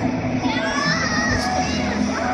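Crowd hubbub echoing in a large indoor field house, with music playing over it. About half a second in, a high-pitched voice calls out, rising and held for about a second.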